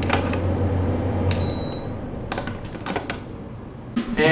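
A hand handling a camera: a few separate clicks and knocks over a steady low hum, which fades out about two and a half seconds in.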